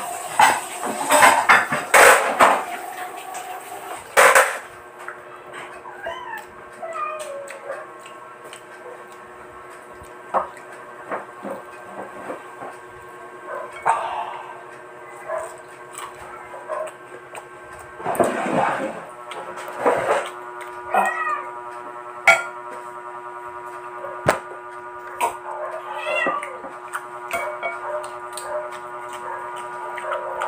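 Eating sounds: a spoon clinking against a ceramic bowl and the crunching of fried chicken, loudest and busiest in the first four seconds, with a few more bursts later. Steady held tones and a few short gliding calls run underneath.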